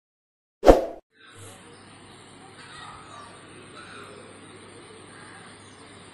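A single short, loud pop from the sound effect of a subscribe-button animation, under a second in. After a moment of silence comes the faint background noise of phone-recorded outdoor footage, with a low hum and indistinct voices.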